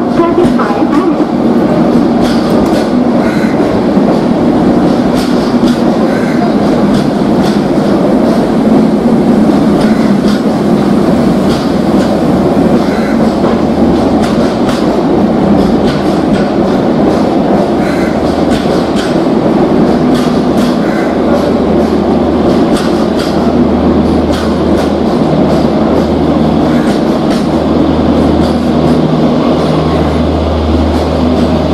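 Rajdhani Express passenger coaches rolling past as the train pulls out: a steady rumble with repeated clickety-clack of wheels over rail joints. From about two-thirds of the way in, a low steady engine hum grows as the diesel generator car at the tail of the train draws near.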